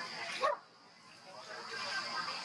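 A macaque's short call about half a second in, cut off abruptly, over a steady high buzz of insects.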